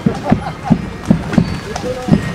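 Hooves of a single carriage horse clip-clopping on a paved street as it pulls an open carriage past, a sharp, even strike about every third of a second.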